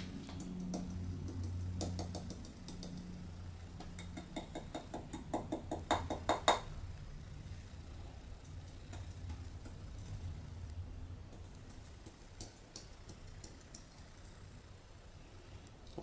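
Light metallic taps and clicks as a small aluminum bottle-bottom alcohol stove is tipped and shaken over a can bottom to drain its leftover fuel. A quick run of taps comes about four to six and a half seconds in, with a few lighter ticks later, over a faint low hum.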